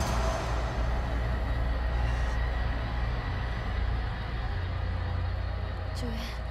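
A steady deep rumble under faint background music, without distinct impacts.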